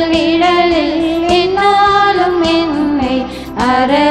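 Women's voices singing a church hymn into microphones, with long held notes and some vibrato, over keyboard accompaniment.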